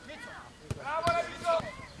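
Footballers' voices shouting in short calls during play, with two sharp knocks near the middle.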